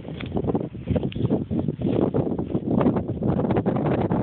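Wind buffeting a phone's microphone, mixed with irregular rustling and knocking from the phone being handled as it is passed to another person.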